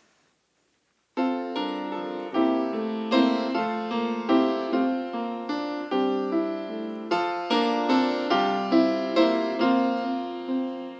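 Piano playing the introduction to a hymn in full chords, each chord struck and fading before the next. It starts about a second in, after a brief silence.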